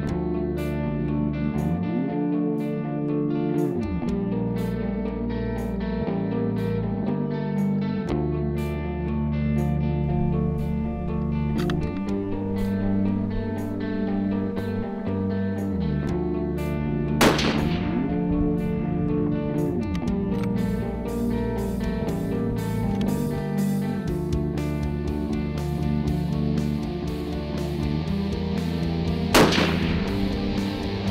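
Guitar music with a steady beat, cut through twice by a single rifle shot from a Gunwerks LR-1000 in 7mm Long Range Magnum, fired at a 530-yard target to check its zero: once a little past halfway and again near the end.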